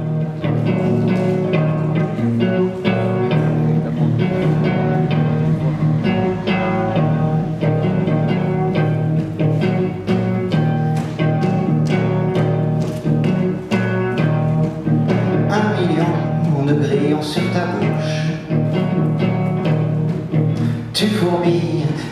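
Live instrumental introduction on a hollow-body electric guitar played through an amplifier, picked notes over steady low notes.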